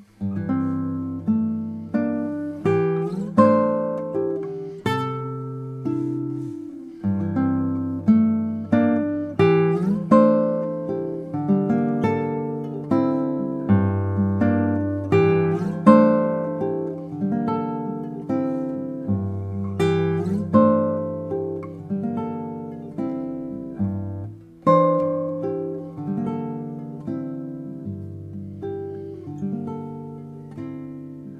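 Solo classical guitar playing: plucked notes and chords left to ring over long held bass notes. There is a brief break about two-thirds of the way through, followed by a strong attack.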